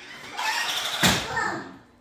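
A young child's excited voice, with a sharp knock about a second in.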